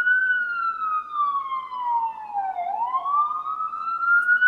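Emergency vehicle siren wailing: a single steady tone sweeping slowly down in pitch, then climbing back up about two-thirds of the way in.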